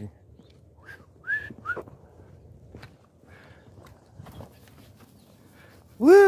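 Quiet outdoor background with a few short, whistle-like chirps, rising in pitch, between one and two seconds in.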